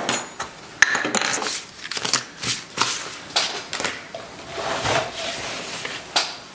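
Plastic containers, bottles and a nitrile glove handled on a workbench: an irregular run of light knocks, clicks and rustles, the sharpest about a second in.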